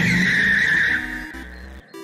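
Tyre screech sound effect of a vehicle speeding off: one loud squeal that starts suddenly, slides a little down in pitch and fades away over under two seconds.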